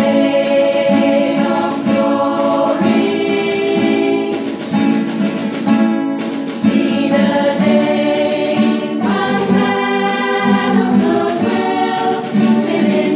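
A small women's choir singing a song with strummed acoustic guitars accompanying, sustained sung notes changing every second or two without a break.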